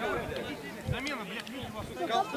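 Indistinct men's voices talking on and around the pitch, with a brief low bump about a second in.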